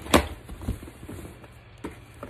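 One sharp knock just after the start, then a few lighter taps and clicks: a package and its contents being handled and set down.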